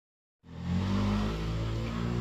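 An engine running steadily with an even, unchanging hum, starting about half a second in.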